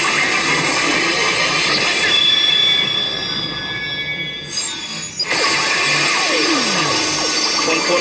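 Pachinko machine sound effects over the steady din of a pachinko parlour. A little after three seconds the sound thins out, then it comes back suddenly; a falling swoop effect follows, and a voice line starts right at the end.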